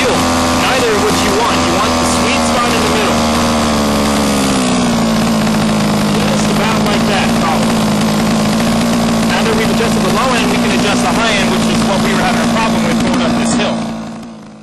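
HPI Baja 5B's small two-stroke petrol engine idling while its low-speed carburettor needle is turned. The idle drops to a lower, steady pitch about four and a half seconds in: the low-end mixture is being moved from lean, where the idle runs fast, back toward rich. The sound cuts off just before the end.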